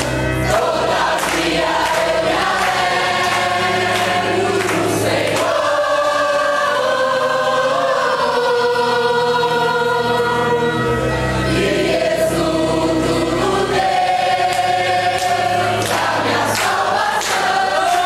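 A congregation singing a worship song together in Portuguese, many voices at once.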